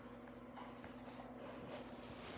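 Faint rustling of a hand rubbing over a pug's fur and the fabric of its dog bed, over a steady low hum.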